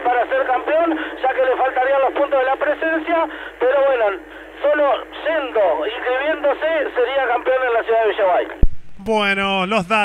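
Speech only: a commentator talking continuously over a thin, narrow-band line that sounds like a telephone. Near the end there is a click, and a fuller-sounding voice takes over.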